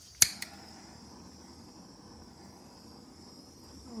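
Small handheld butane torch being lit: a sharp igniter click, a second smaller click just after, then the flame hissing steadily as it is played over wet poured acrylic paint to bring up cells.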